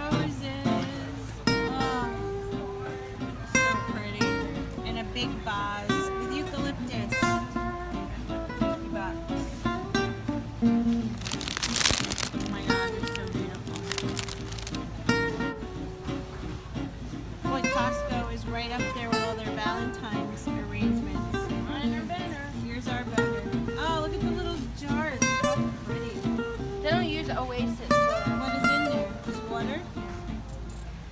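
Background music with plucked strings, a guitar or ukulele sound, playing steadily. A brief hiss of noise sweeps through about twelve seconds in.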